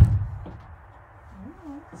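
A horse's hoof landing with one heavy thump on a horse trailer's floor as a young horse is backed out step by step, fading within about half a second. A woman's voice is heard briefly near the end.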